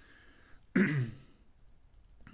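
A man clearing his throat once, about three-quarters of a second in, the pitch dropping as it goes.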